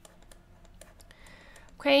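Faint, irregular light clicks and taps of a stylus on a pen tablet as words are handwritten.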